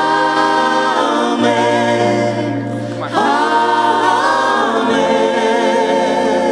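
Church worship team singing a gospel song in several voices, with long held notes and a new sung phrase starting about three seconds in, over held bass notes.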